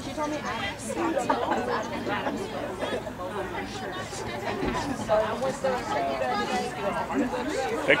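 Indistinct chatter of several overlapping voices from spectators and players. A loud, close shout comes right at the end.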